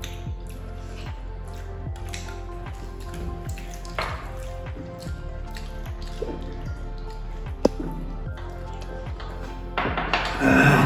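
Steady background music under soft wet squishing and scattered small clicks of eating by hand: fingers mixing rice with curry and mouth sounds of chewing. One sharper click stands out about three-quarters of the way through.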